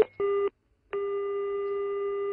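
Telephone call-progress tones on a dropped call. The last short beeps of a busy tone sound first, then after a pause comes one long ringing tone of the same pitch, lasting about a second and a half, as the call is put through again.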